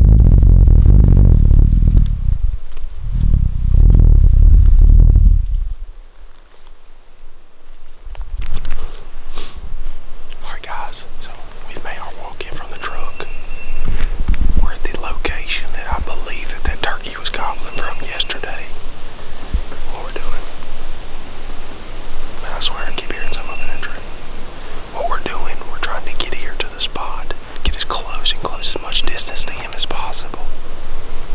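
A loud low rumble of wind on the microphone while walking through the woods for the first several seconds, then a man whispering for the rest.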